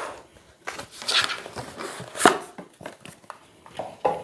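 A tarot card deck and its cardboard box being handled on a tabletop: a brief rustle about a second in, a sharp tap a little after two seconds, and a few small clicks.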